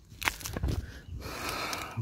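Rustling and crackling of vegetation: a couple of sharp crackles, then a longer rustle.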